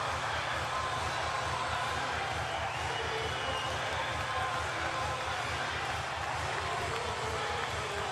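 Ballpark crowd cheering steadily, with scattered shouts among the noise.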